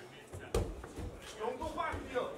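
A sharp thump about half a second in, then voices calling out from the watching crowd and corners during a grappling match.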